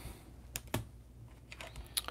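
A few faint, sharp clicks and taps from a trading card in a hard plastic holder being handled and set against a wooden display stand.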